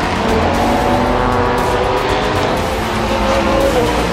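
Prototype race car engine passing at speed, its pitch rising and falling and dropping near the end, mixed with background music.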